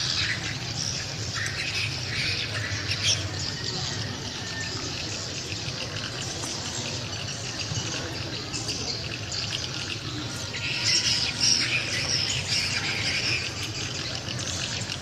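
Many small birds chirping and squawking at once, a dense high chatter that grows busiest near the end, over a steady low hum.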